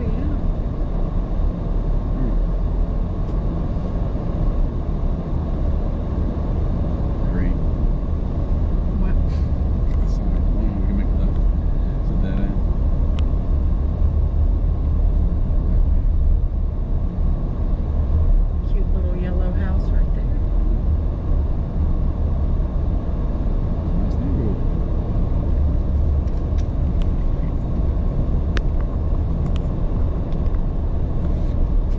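Car driving slowly along a quiet road: a steady low rumble of engine and tyre noise, with a few faint brief sounds over it.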